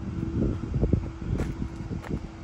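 Wind buffeting the microphone in irregular low rumbling gusts, over a faint steady hum.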